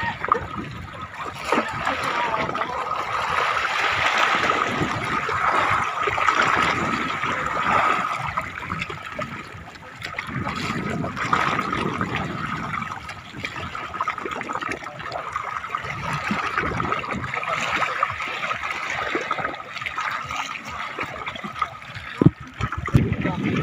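Seawater splashing and sloshing as a fishing net is hauled in beside a boat, with the water churned up where the net is drawn tight.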